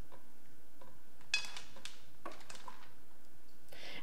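A spatula scraping butter out of a measuring cup into an aluminium pan: a few faint clicks and taps over quiet room tone.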